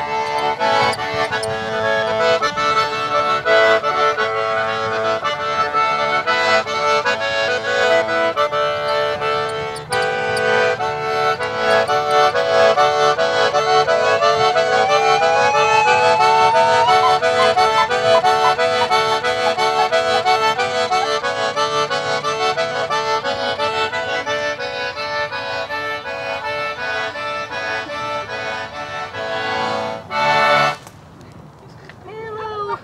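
Accordion playing a folk tune in a steady rhythm, pulsing chords over a held drone note. A single sliding tone rises briefly about halfway through.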